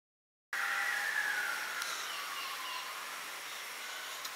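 Film soundtrack cutting in abruptly after a short silence: a steady rushing noise with a whine that falls in pitch over the first two seconds.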